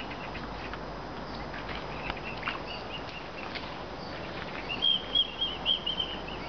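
Swan cygnets peeping: thin, high, short calls scattered through, then a louder run of about six quick peeps near the end.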